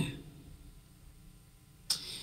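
Quiet room tone after a spoken word trails off, with a single sharp click near the end.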